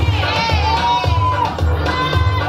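DJ-played dance music with a heavy bass beat, about two beats a second, kicking back in right at the start, with an audience shouting and cheering over it.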